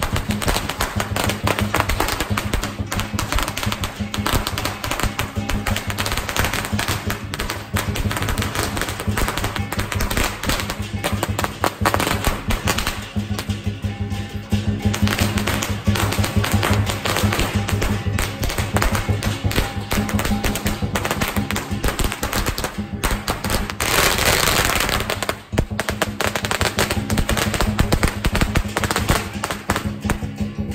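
Strings of firecrackers crackling in dense, rapid pops over music, with a louder burst of crackling about 24 seconds in.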